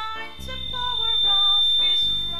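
A woman singing a gospel song solo into a handheld microphone over instrumental backing with a bass line, her voice swelling louder through the middle. A steady high-pitched tone sounds under the music throughout.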